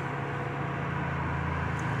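Steady low mechanical hum in the background, without distinct events.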